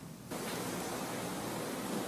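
Steady hiss of line noise from a remote reporter's audio feed, which switches on about a quarter second in and holds level with no other sound.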